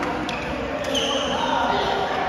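Doubles badminton in a sports hall: two sharp racket strikes on the shuttlecock about half a second apart, then a short high squeak of court shoes on the floor, over echoing voices.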